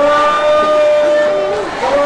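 A man's voice chanting long, high held notes in a mourning procession: one note slides up and holds steady for about a second and a half, and a second begins near the end.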